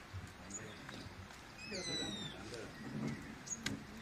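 A bird calling faintly: a falling whistled call about halfway through, over faint indistinct voices, with a sharp click near the end.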